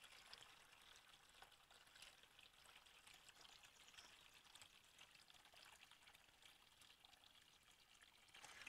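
Faint, steady splashing of a gravity-fed one-inch stream of water pouring from a hose into a plastic bucket.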